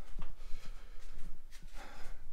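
A few soft footsteps and handling knocks from a handheld camera being carried through a framed-out room, over a steady low hum.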